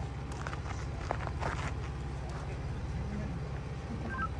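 Ford Bronco's engine running low and steady as the SUV crawls slowly over slickrock, with a few brief clicks and scrapes in the first half.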